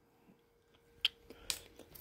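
Quiet room tone with a faint steady hum, broken by a few short, faint clicks in the second half.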